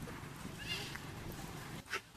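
A young macaque gives a brief high squeak about a third of the way in while being grappled by an adult, over a low background of voices; a sharp click sounds near the end.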